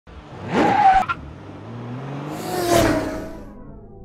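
Intro logo sound effect of a car engine revving and passing by twice, its pitch falling each time. The first pass cuts off sharply about a second in. The second swells and fades out near the end.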